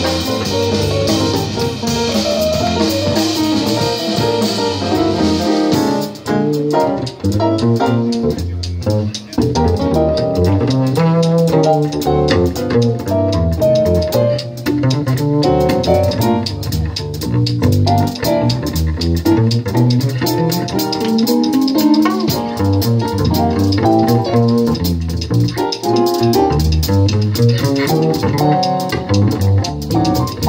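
Live jazz quartet playing an instrumental passage on piano, plucked double bass and drum kit. About six seconds in, the cymbal wash stops and piano and double bass carry on with moving note lines.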